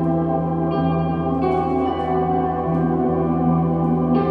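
Ambient post-rock music: an electric guitar played through effect pedals, with long sustained notes layered into a steady wash. New notes swell in about a second in and again near the end.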